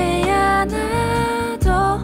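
R&B/soul song playing: a melody line that slides between notes over sustained bass and keys, with a drum hit about three-quarters of the way through.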